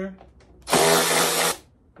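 Cordless electric ratchet running in one steady burst of just under a second, backing out an outboard motor's cowling bolt.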